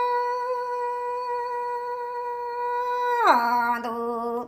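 A woman singing Hmong kwv txhiaj (sung poetry), holding one long steady note that glides down about an octave near the end and holds there.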